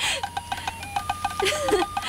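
A woman laughing softly, over steady high electronic-sounding tones with a fast, regular ticking.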